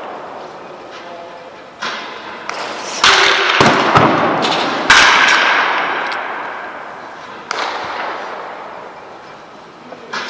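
Baseball bat striking balls in a batting cage: a few sharp cracks of contact, the loudest about five seconds in, each trailing off over a second or two.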